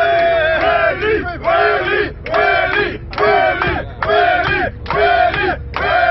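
A group of people shouting together: a long held cheer, then from about a second in a rhythmic chant in unison, about one shout a second.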